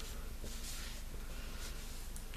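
Faint rubbing of a cotton pad moistened with micellar water wiped across the skin of a forearm, in a few soft strokes, to remove makeup swatches.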